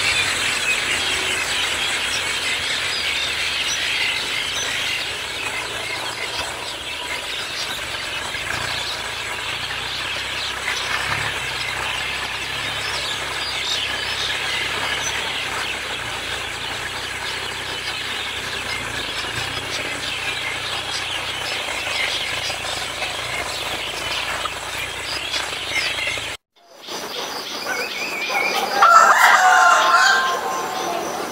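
Dense chorus of a large flock of perched birds chattering and calling all at once. It cuts off suddenly about 26 seconds in, and a louder bird call follows near the end.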